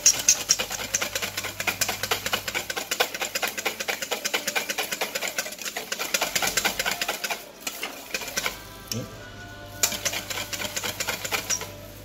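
Wire balloon whisk beating an orange vinaigrette in a stainless steel bowl: a fast, steady metallic rattle of the wires striking the bowl, several strokes a second, with a short break about three-quarters of the way through.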